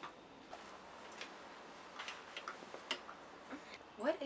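Faint, irregular light clicks and taps, about seven over four seconds, over quiet room hiss.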